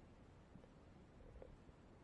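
Near silence: a faint, muffled low rumble of pool water around a submerged camera.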